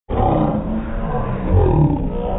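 A man's voice played back slowed down, deep and drawn out like a growl, its pitch gliding downward near the end.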